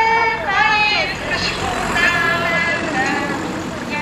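Voices singing a hymn, with long held, wavering notes, over a steady low background noise of the crowd and street.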